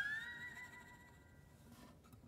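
A single note on an acoustic Weissenborn-style lap steel guitar, slid upward in pitch with the steel bar and left ringing. It fades away over about a second, leaving only a faint tail.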